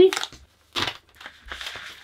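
Rustling of a thin sheet of paper being handled and moved, in two short spells, one just under a second in and a longer one near the end.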